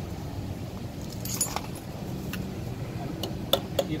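Loose steel hand tools clink and jingle about a second in, then a few sharp metallic taps near the end: a hammer striking the lock-washer tab by the trailer's axle spindle nut, bending it down against the nut. A steady low hum runs underneath.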